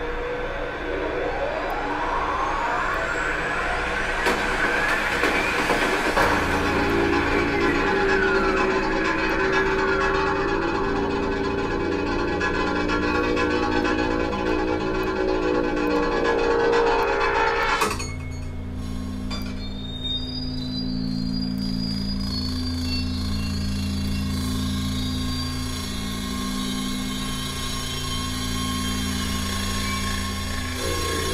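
Playback of an electroacoustic composition: dense layered sustained tones with sliding pitch glides over a steady low drone, which cut off abruptly about eighteen seconds in. They give way to a quieter texture of low steady hums with a faint high tone gliding upward.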